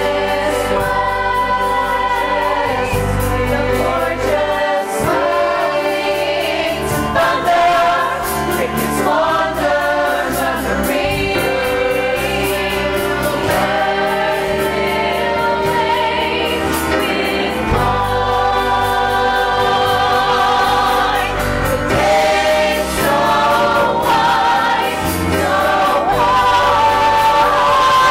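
Full musical-theatre cast of men and women singing together in choral harmony, with long held notes over a sustained low accompaniment.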